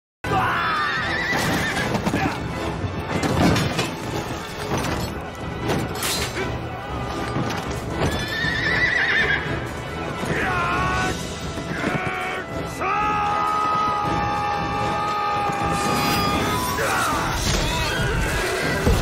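Horses neighing several times, each a falling, warbling call, over dramatic film music. The music holds long steady notes near the end.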